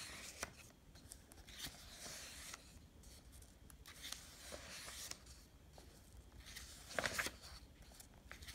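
Paper workbook pages being turned by hand: a series of soft rustles and page flips, the loudest near the end.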